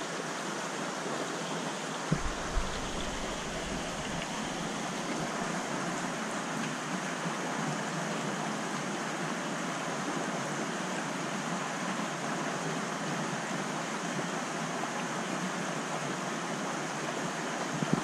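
Steady rushing and splashing of water from a large aquarium's filtration return pipes churning the surface. There are two soft thumps about two seconds in.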